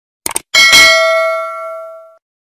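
A quick double mouse-click sound effect, then a bright bell ding that rings on and fades over about a second and a half: the click-and-bell sound effect of an animated subscribe-and-notification-bell button.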